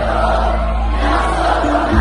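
Live amplified sertanejo band music with a huge crowd singing along over steady bass.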